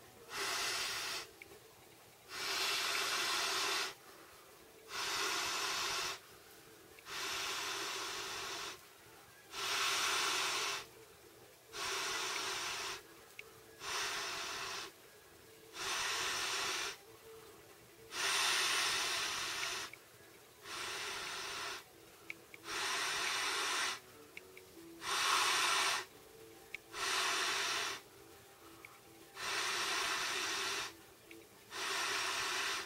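Intex air bed being blown up by mouth: long breaths forced through the valve, about one every two seconds, with short quieter pauses between.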